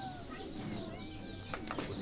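Birds calling over a low murmur of background voices, with a few sharp clicks near the end.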